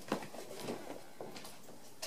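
Faint footsteps and shuffling of a person moving about a small room, with a few light knocks, the loudest just after the start.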